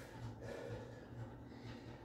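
A man's faint breathing during a stretch between push-up sets, over a low steady hum.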